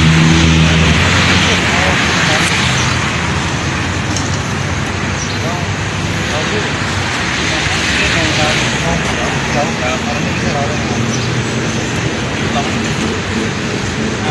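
Loud, steady outdoor noise, like road traffic, with indistinct voices of people talking.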